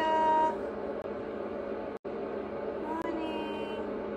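A baby vocalizing: a drawn-out, high-pitched call at the start and a higher, rising one about three seconds in, over a steady background hum.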